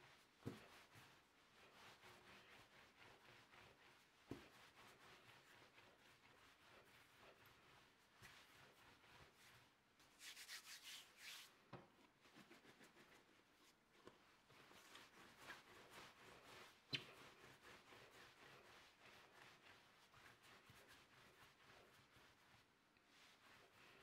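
Faint rubbing of hands rolling soft bread dough back and forth into a long thin strip on a marble countertop, with a few soft knocks along the way.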